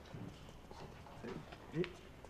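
A mostly quiet pause with faint room tone, broken by a couple of short, faint vocal sounds from a man hesitating before he answers, one just before the end.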